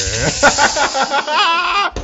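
A handheld rattle shaken vigorously in a continuous hissing shake that stops near the end, with a man's voice calling out over it.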